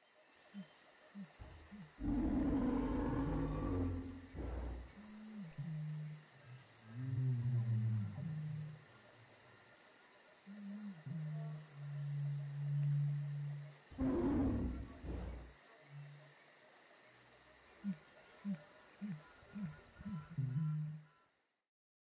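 Animal roar sound effects: two long roars, one about two seconds in and one about fourteen seconds in, with low growling calls between them and a quick run of short grunts near the end.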